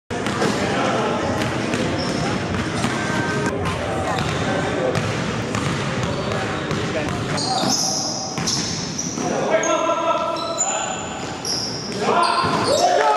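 Basketballs bouncing on a gym court amid indistinct players' chatter, echoing in a large hall. In the second half, repeated short high squeaks from sneakers on the floor.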